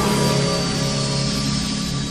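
Background music: a steady held chord under an even hiss.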